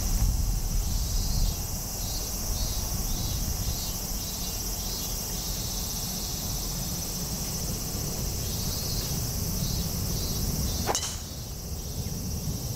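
A driver strikes a golf ball off the tee about eleven seconds in, making one sharp crack. Behind it runs a steady high insect drone and a low rumble of wind on the microphone.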